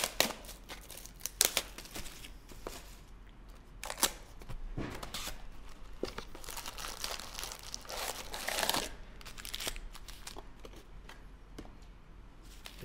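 A cardboard box of 2020 Select Footy Stars Prestige trading cards being torn open and its foil packs handled, crinkling and rustling. There are scattered sharp snaps, and longer rustles around the middle and later on.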